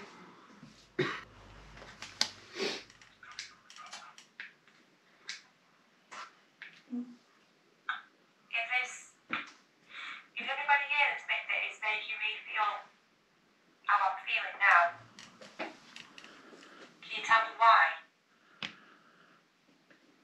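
Speech played back from a handheld digital voice recorder during an EVP session review, in several short stretches with sharp clicks between them.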